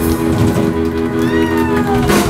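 Live rock band holding a sustained chord, with a high note sliding down in pitch over it through the middle.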